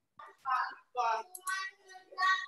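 A child's high-pitched voice coming through a video call, starting a moment in, with some syllables drawn out on held tones.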